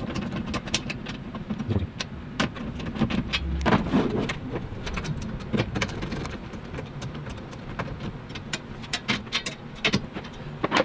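Socket ratchet wrench clicking in short runs with pauses as it tightens locking nuts on a steel MOLLE panel, with light metal clinks of the tool and hardware.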